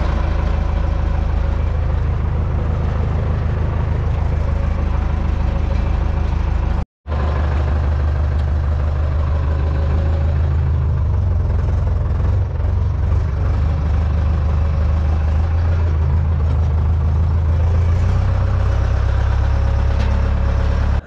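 John Deere tractor's diesel engine running steadily under way, heard from inside the cab. The sound cuts out briefly about seven seconds in.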